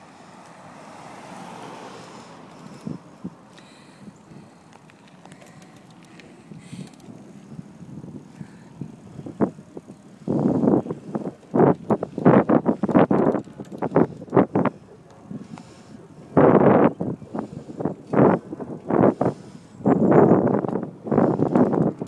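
Wind rushing and buffeting on a phone microphone that is moving along a road with a child's bicycle: a low, even rush for about ten seconds, then irregular loud gusts and bursts for the rest.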